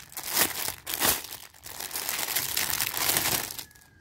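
Clear plastic bag crinkling and rustling as it is opened and a pair of gloves pulled out of it; the crackling stops shortly before the end.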